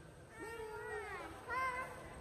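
A young girl whining in drawn-out, wordless, meow-like cries. One long cry starts about half a second in and falls away, and a shorter, louder one follows near the end.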